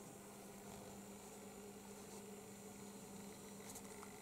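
Near silence: room tone with a faint steady electrical hum and hiss.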